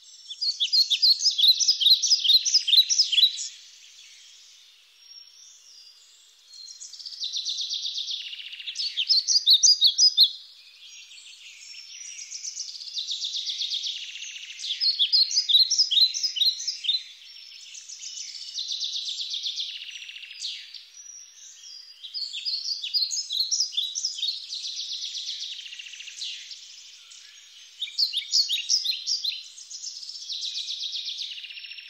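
Songbirds singing: loud phrases of rapid, high chirping notes recur every few seconds, over a continuous background of fainter high-pitched birdsong.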